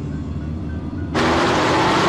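Film sound effects of a car collision: a low vehicle rumble, then about a second in a sudden loud crash that keeps going as a dense noise, with music under it.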